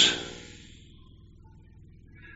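A pause in a man's speech: his last word fades out in the room's echo within the first half second, leaving only a faint, steady low hum of room tone.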